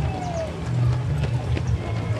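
Loud music with a heavy, pulsing bass line, over the quick footfalls of a crowd of runners passing on asphalt.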